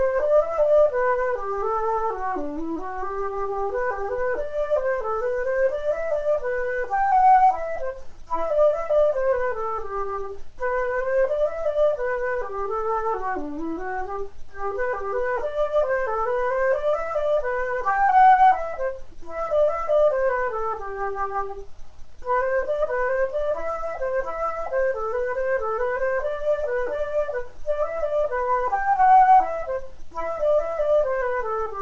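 A solo flute playing a lively traditional tune in G, a fast run of separate notes in repeating phrases with short breaths between them.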